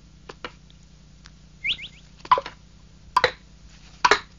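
Cartoon sound effect of a gourd hopping along behind on stone steps, heard as a few light knocks like footsteps, the loudest about three seconds in, with a quick run of three rising chirps shortly before the midpoint.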